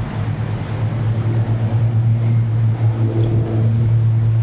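An engine running with a steady low hum that grows slightly louder over the few seconds.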